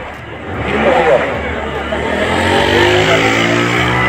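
A motor vehicle's engine running close by. It swells in about half a second in and holds loud, its pitch climbing slowly.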